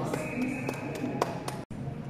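Ice hockey rink during play: several sharp clacks of sticks and puck over a steady high tone that lasts about a second and a half, then a brief dropout in the sound.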